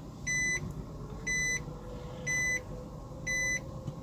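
A car's in-cabin reverse warning beeper sounding at an even pace of about one short, high beep a second, four times, over the low hum of the running car.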